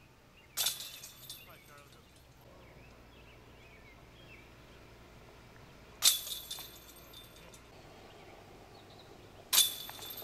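Three metallic clangs of discs striking the chains of a disc golf basket, each followed by a second or so of jingling chains. The first comes about half a second in, the second about six seconds in, and the last near the end.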